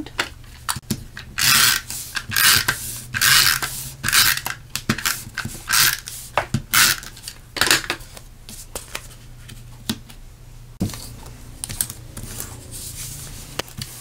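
Cardstock panels being handled, flipped and pressed on a craft mat: a run of short scraping, rustling paper strokes through the first half, then quieter, with a few light clicks and taps.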